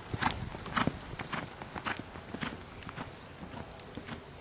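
Hoofbeats of a reining horse: a run of irregular thuds, two or three a second, that grow fainter over the last second or so.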